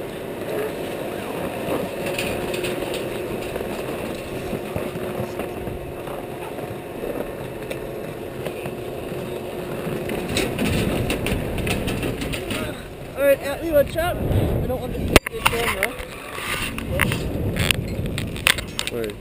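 Skis and poles scraping and shuffling over packed snow while boarding a chairlift, with a single sharp clack about fifteen seconds in as the chair is boarded, and other skiers' voices in the background.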